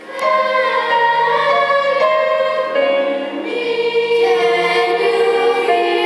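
Children's choir singing, the voices coming in together loudly just after the start and holding long, sustained notes.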